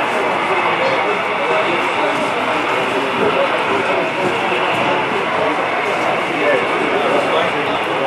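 Crowd babble: many people talking at once in a large hall, a steady din of overlapping voices with no single speaker standing out.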